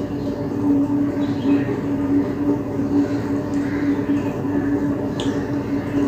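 A steady machine-like hum over background noise, with a few faint clicks of fingers mixing rice and curry on a plate, the clearest about five seconds in.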